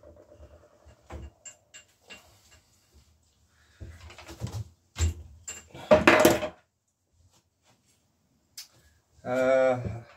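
Light clicks and knocks of a hand tool and metal parts being handled at a bicycle's handlebars, with a louder clatter about five to six seconds in. A short hummed vocal sound comes near the end.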